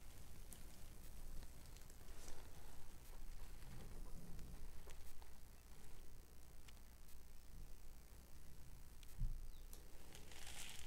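Faint handling noise from a wet acrylic-pour canvas being held and tilted in gloved hands: scattered light clicks and rustles over a low room hum, with a soft thump near the end.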